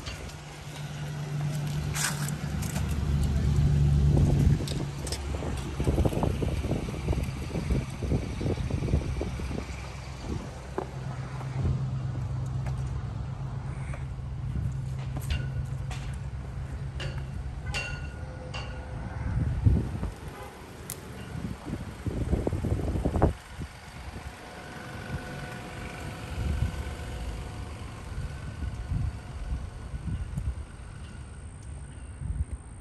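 Wind buffeting the camera's microphone in irregular low rumbling gusts, over the steady low hum of a vehicle engine running. A few light clicks come about halfway through.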